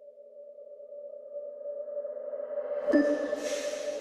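Opening of an electronic psytrance track: a sustained synth drone fading in and swelling steadily louder, with a sudden hit about three seconds in followed by a rising hiss of high noise.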